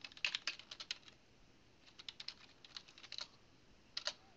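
Typing on a computer keyboard: two quick runs of keystrokes with a pause of about a second between them.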